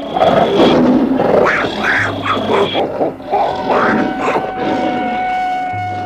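Lion roaring and growling in several rough surges, over background music with a held note that comes in about halfway through.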